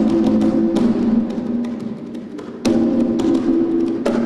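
A pair of conga drums played with bare hands: ringing open tones on two pitches mixed with sharp slaps. The playing thins out to a few quieter strokes in the middle, then comes back in full with a loud stroke about two and a half seconds in.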